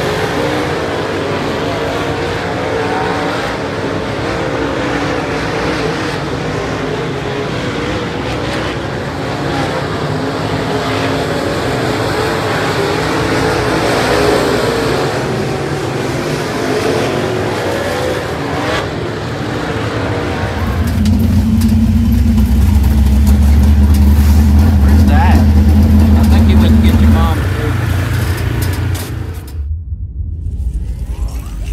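Dirt-track modified race cars running on the track, engines wavering up and down in pitch, with voices mixed in. About twenty seconds in, a deep steady hum takes over for several seconds.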